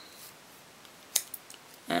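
A sharp click about halfway through, then a few faint ticks, as a plastic-sleeved trading card is slid off the front of a stack held in the hand.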